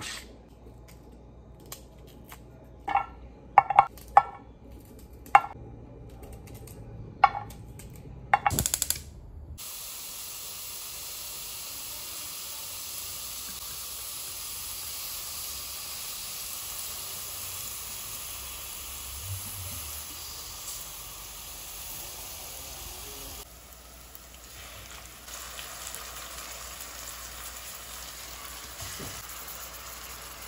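A knife knocking a handful of times on a plastic cutting board, then chopped onion frying in oil in a pan, a steady sizzle for the rest of the time.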